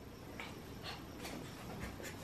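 A small dog panting faintly, a few soft breaths about half a second apart.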